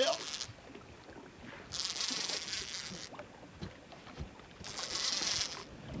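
Fishing reel whirring in three high-pitched bursts of about a second each, a second or so apart, as a large catfish is fought on a heavily bent rod.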